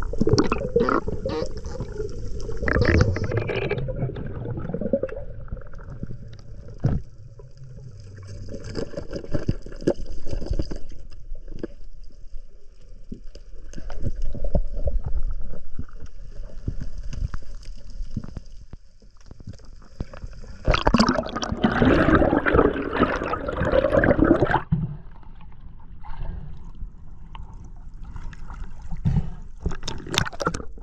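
Muffled water noise heard through an underwater action camera as a diver swims: an uneven low rushing and gurgling, with a louder stretch of rushing, splashing water for a few seconds about three-quarters of the way through.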